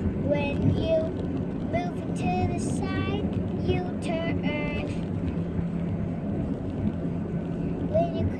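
A young child singing in a high voice for the first four and a half seconds or so: several drawn-out notes with no clear words, then he stops. A steady low hum runs underneath the whole time.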